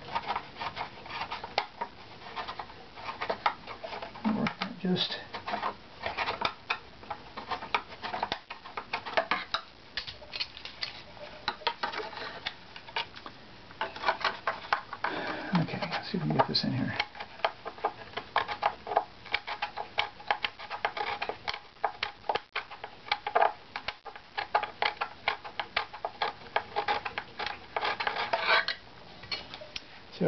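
Hand scraper working the inside of a violin back plate: a steady run of short, quick scraping strokes and clicks of a steel blade on wood. The wood is being thinned in a small area to raise the plate's tap-tone pitch.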